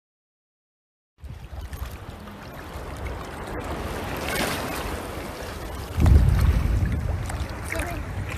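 Wind on a phone microphone over open sea water, with water splashing around a swimmer, starting about a second in after dead silence. The wind buffeting turns louder from about six seconds in.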